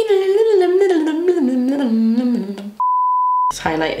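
A woman hums a short wavering tune that drifts downward in pitch for nearly three seconds. Then a steady high-pitched censor bleep, under a second long, replaces a muted word, and her speech resumes right after it.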